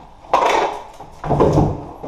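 Skateboard clattering on a concrete floor: a sharp knock about a third of a second in, then a second, longer knock and rumble just past a second.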